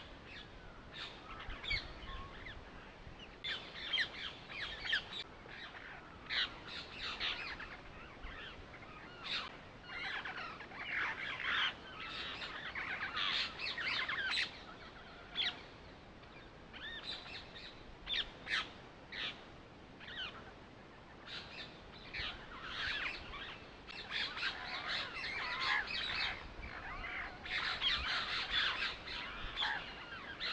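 Birds chirping and calling: many short, high calls in quick overlapping runs, busier in some stretches than others.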